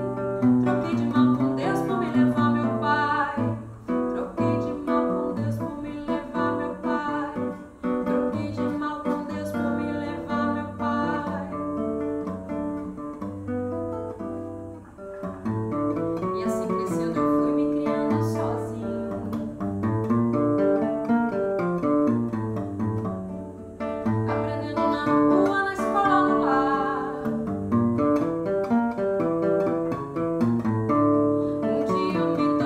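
Brazilian seven-string acoustic guitar (violão de 7 cordas) playing a samba accompaniment with moving low bass lines, and a woman singing near the start and again near the end.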